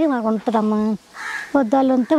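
A woman speaking Telugu. In a short pause about a second in, a brief harsh bird call sounds.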